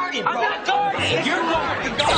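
A man's excited shouting voice in sitcom dialogue, over background music.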